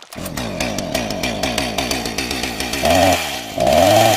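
Chainsaw sound effect running continuously, with two louder revs, one about three seconds in and one near the end.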